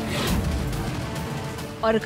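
Dramatic TV-serial background score: a sudden hit at the start with a low boom fading over the following second, over a sustained music bed. A woman's voice begins just before the end.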